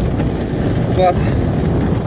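Steady road and wind noise from a velomobile rolling along an asphalt road, its tyres and shell making a continuous low rumble.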